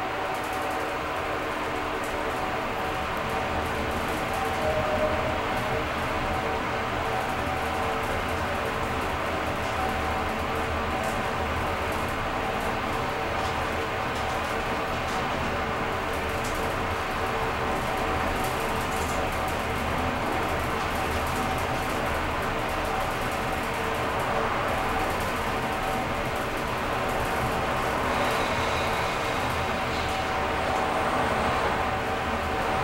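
Ride noise inside a Mitsubishi NexWay high-speed traction elevator car travelling upward at speed. A steady rush and hum is heard, with a few steady tones held throughout.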